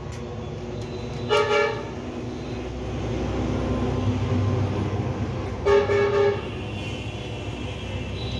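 A vehicle horn honking briefly twice, about four seconds apart, over a steady low rumble.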